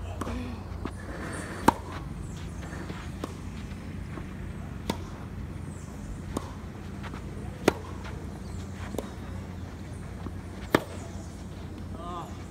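Tennis rally: sharp pops of a racket striking the ball, the loudest three from the near player about two seconds in, near eight seconds and near eleven seconds, with fainter strikes and bounces from the far end between them, over a steady low background rumble.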